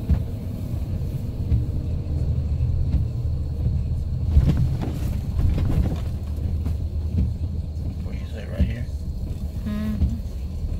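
Steady low rumble of a vehicle's engine and road noise, heard from inside the cabin while driving, with a few brief voice sounds near the end.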